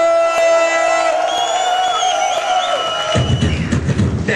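Human beatboxing into a microphone: long held vocal tones with high whistle-like glides, then a deep bass line with a quick percussive beat cutting in about three seconds in.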